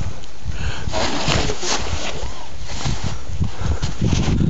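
Wind buffeting the microphone: a steady low rumble, with quiet voices underneath.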